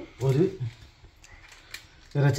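A short spoken word from a woman's voice, then quiet with a couple of faint ticks.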